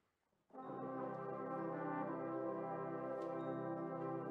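Brass band coming in about half a second in after near silence, playing sustained chords with the low brass strong.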